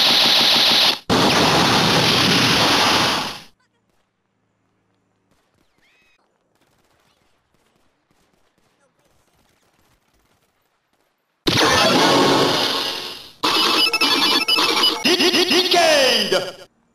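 Loud finisher-attack sound effect from a Kamen Rider Zi-O transformation belt toy, a dense gunfire-like rush that dies away after about three seconds. Several seconds of near silence follow, then another loud burst of effects with a rapid stuttering pattern starts near the end.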